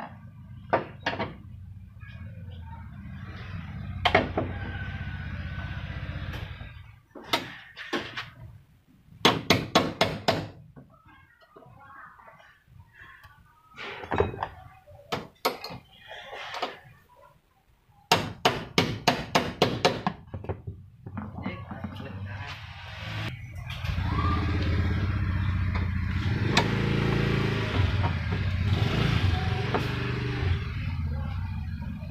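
Metal knocks on a tailgate's door-lock striker plate as it is worked with a screwdriver and tapped further inward to make the tailgate shut tight: single knocks and two quick runs of several strikes. A steady low rumble comes in for the last few seconds.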